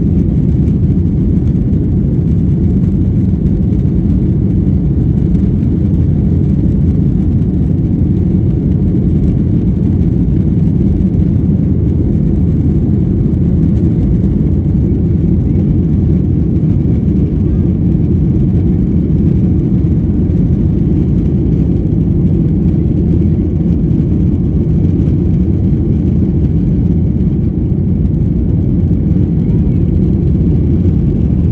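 Boeing 757-300's jet engines at takeoff thrust heard from inside the aft cabin: a loud, steady, deep noise as the jet finishes its takeoff roll, lifts off and climbs out.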